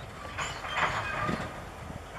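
Freight wagons rolling slowly on track during shunting, with irregular clanks and creaks from wheels and couplings.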